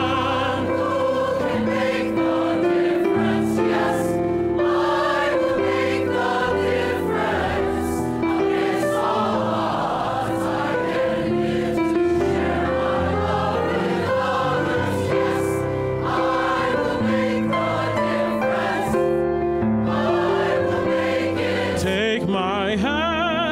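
Mixed-voice choir singing held chords in harmony, the notes changing every second or two.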